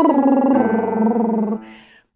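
A woman's lip trill, lips fluttering on a sung pitch, stepping down through the last notes of a 1-3-5-8-10 arpeggio over the keyboard and fading out about a second and a half in.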